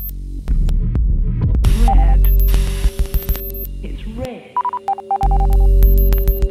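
Electronic intro music with deep bass pulses, glitchy clicks and held tones. About two-thirds through, the bass cuts out briefly under a run of short digital beeps.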